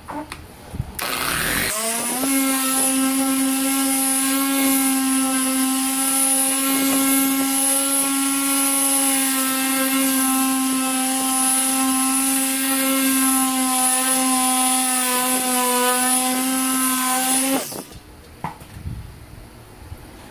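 Harbor Freight Chicago Electric 6-inch random orbital polisher buffing polish on a headlight lens. Its motor spins up about two seconds in to a steady whine, runs evenly, and cuts off suddenly near the end.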